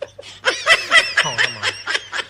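A person laughing off-camera in quick, high-pitched giggles, picking up about half a second in and going on in rapid bursts.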